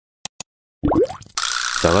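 Editing sound effects for an animated logo intro: two quick clicks, then a short rising swoop, then a noisy glitchy swish. A man's voice starts just before the end.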